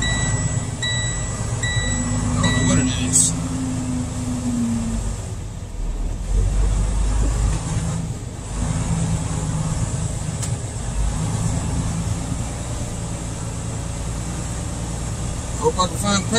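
Semi-truck diesel engine running as the truck rolls slowly, heard from inside the cab. A repeating high beep sounds about once a second during the first three seconds, then stops.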